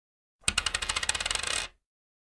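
Intro sound effect of coins clinking in a rapid, even run of over a dozen strokes a second. It starts about half a second in and stops abruptly after just over a second.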